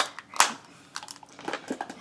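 A sharp click, a louder one just under half a second later, then several faint ticks and crackles.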